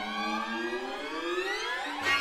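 String quartet holding a sustained chord, then sliding upward together in a siren-like glissando over the last second, breaking off into a new held chord at the end.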